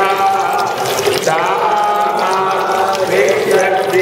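Devotional chanting by voices in a worship ceremony, with long held notes that glide up and down and carry on without a break.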